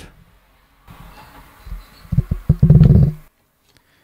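Muffled, bass-heavy rumble and thumping right at the microphone, starting about a second in, growing to a run of loud thumps between two and three seconds in, and cutting off suddenly just after three seconds.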